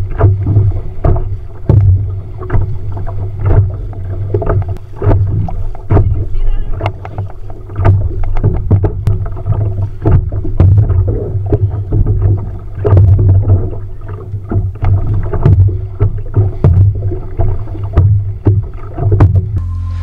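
Kayak being paddled hard through choppy water, with frequent irregular splashes and slaps of water against the boat, about one or two a second. A heavy low rumble of wind buffeting the kayak-mounted microphone runs under it.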